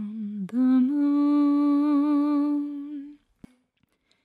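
A woman humming the melody a cappella: one held note breaks off about half a second in, then a slightly higher note is held, wavering a little, for about two and a half seconds before it fades out.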